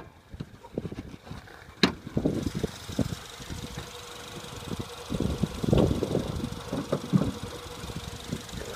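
2010 Acura RDX's turbocharged four-cylinder engine idling while the hood is raised: a sharp click of the hood latch about two seconds in, after which the engine's steady idle hum and whine are heard more plainly, with some handling knocks.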